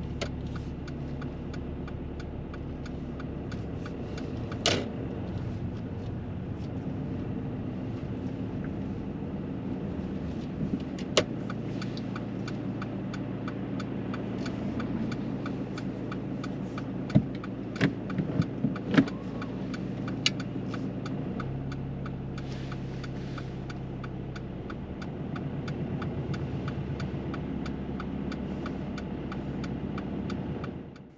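A manual car's engine idling, heard from inside the cabin, with faint regular ticking throughout. Around two-thirds of the way in come a few sharp clicks and clunks as the gear lever is worked into reverse. After that the engine's low hum shifts as the car starts to reverse.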